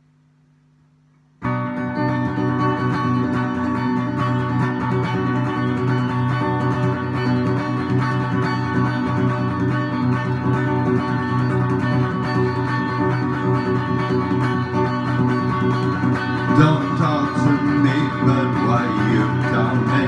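Electric guitar starts abruptly about a second and a half in, playing steady sustained rock chords as the opening of a punk rock song.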